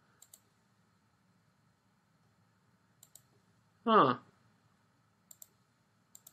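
Computer mouse clicking: three short pairs of sharp clicks, each about two and a half seconds apart.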